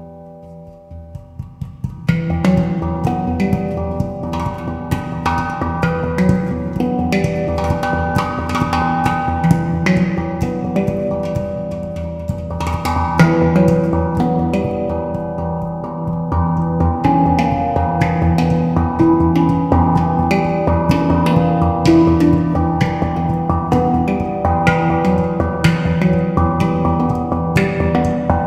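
Yishama pantam (steel handpan) played by hand. After a soft, fading opening, a fast, dense stream of struck notes begins about two seconds in, the notes ringing into one another over a sustained low bass tone.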